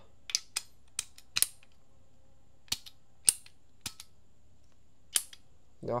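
Brass automatic quick-connect air hose coupling for 6 mm tube being snapped and handled: a series of about eight short, sharp metallic clicks, irregularly spaced, some close together.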